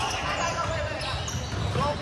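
Basketball game play on a hardwood gym floor: a ball bouncing and players moving on the court, mixed with voices from players and the sideline.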